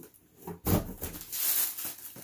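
Cardboard sneaker box and its paper wrapping being handled: a sudden scrape about half a second in, followed by a rustle.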